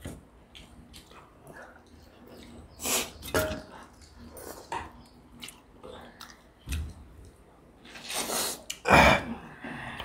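Sniffling and sneezing from people eating spicy egg curry and rice: two short nasal bursts about three seconds in, then a longer rush of breath and a sharp burst near the end, the loudest. Faint sounds of hands mixing food on metal plates between them.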